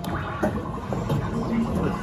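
Arcade background din: game machines' sounds and indistinct voices, with a single knock about half a second in.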